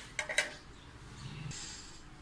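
Three quick light clicks and clinks on a stainless-steel pot with a whisk in it, within the first half-second. They are followed by faint handling noise and a brief soft rustle near the end.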